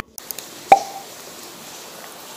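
Light, steady rain hiss, with one sharp short plop about three-quarters of a second in.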